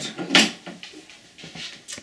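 A few faint clicks and knocks of handling as a power-supply plug is fitted into the back of a small electronic timer, with a sharper click near the end.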